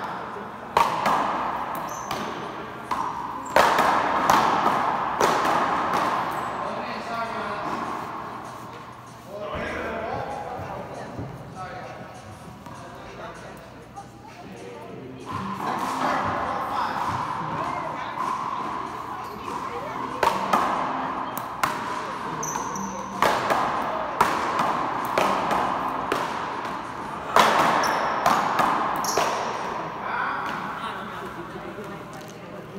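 Paddleball being played on an indoor court: sharp cracks of the ball off the paddles and the wall, in bunches with quieter gaps, echoing in the large hall over background chatter.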